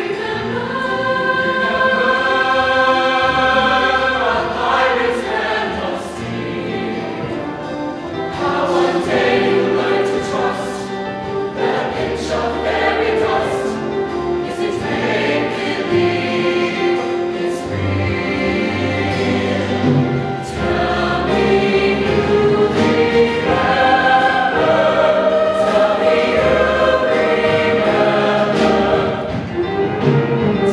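Large mixed-voice show choir singing sustained, slowly changing chords, accompanied by a live show band with bass and cymbals.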